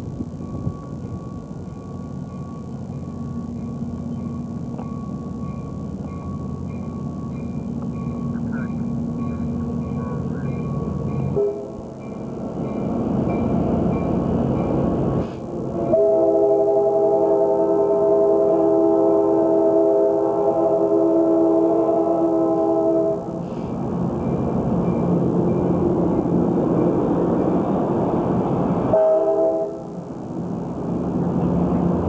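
A passenger train runs past at close range, its rumble building over the first ten seconds. A multi-note train horn gives a short blast, then sounds one long chord of about seven seconds midway, and a short blast again near the end.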